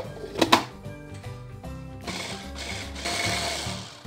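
A click as a stick blender's motor unit is fitted onto its chopper bowl, then the blender whirring from about halfway, pureeing banana, spinach, pine nuts and yogurt into a sauce, and stopping just before the end. Background music plays throughout.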